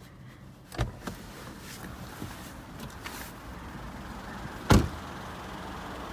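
A car door latch clicks open about a second in, then the front door of a Peugeot 2008 is shut with one loud thump near the end.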